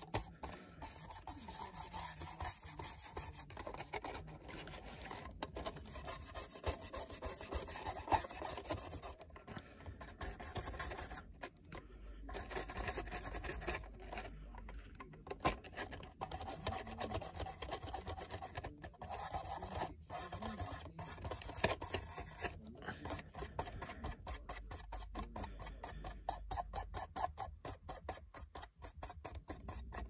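Small brush scrubbing pastel chalk onto the plastic side of an HO scale model boxcar: bristles rubbing back and forth in quick repeated strokes, with a few short pauses.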